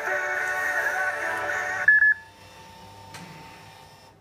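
Advertising music playing from the coffee vending machine, cutting off about two seconds in with a short high electronic beep; after that only a faint steady tone.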